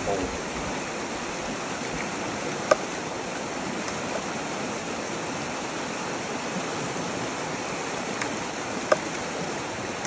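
River water flowing and rushing steadily, with a few sharp clicks, the loudest about a third of the way in and again near the end.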